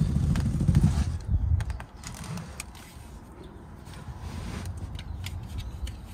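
Low rumbling handling noise for about the first two seconds, then faint clicks and scrapes as a tape measure is handled.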